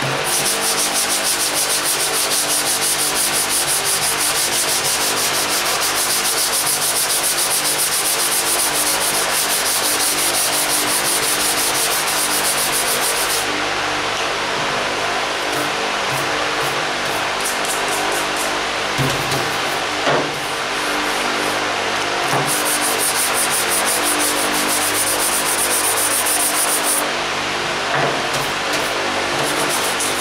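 Hand-sanding cured body filler on a car hood with 180-grit paper on a sanding block: fast back-and-forth strokes over the steady hum of a shop fan. The sanding breaks off about 13 seconds in, giving way to a few separate strokes, and starts again for several seconds near the end.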